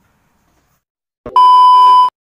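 Loud, steady 1 kHz test-tone beep of the kind played with TV colour bars, used as an edited-in glitch transition effect. It starts abruptly with a short crackle about a second and a quarter in and holds on one pitch until it cuts off.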